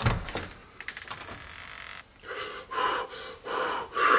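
A door's knob and latch clicking as it is turned and the door is opened, then a man gasping several times in short breaths.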